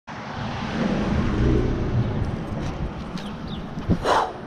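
Street traffic, with a car going by as a low rumble that swells and fades, and a short thump near the end.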